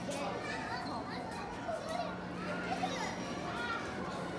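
Background chatter of a crowd of visitors with children's voices calling and talking, no one voice standing out, over a steady low hum.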